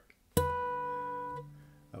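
Acoustic guitar: a single natural harmonic plucked on the second string at the 12th fret, the opening note of the tune. It sounds once about a third of a second in as a clear high ringing tone, with lower strings sounding faintly underneath, and fades out over about a second and a half.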